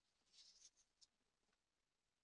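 Near silence, with a few very faint ticks in the first second.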